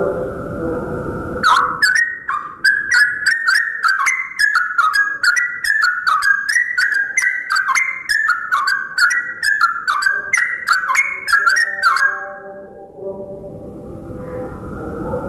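Yellow-vented bulbul singing a long, fast run of bubbly whistled notes that jump up and down in pitch. The song starts after a lower, steadier sound in the first second and a half and stops about two seconds before the end.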